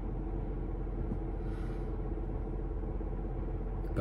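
Steady low rumble of a car engine idling, heard inside the car's cabin.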